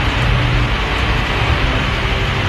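Steady hiss and rumble of an old archival film soundtrack, the recording's own noise between spoken phrases.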